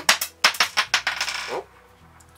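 A small steel part dropping onto a wooden workbench and clattering, a quick run of bouncing clinks lasting about a second and a half.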